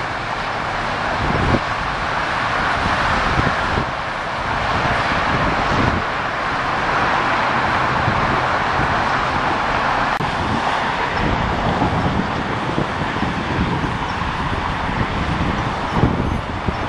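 Steady hiss of freeway traffic passing below, with wind gusting on the microphone.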